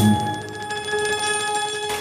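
A rock music sting cuts off at the start, leaving a steady, bell-like ringing with a fast, even rattle that stops just before the end.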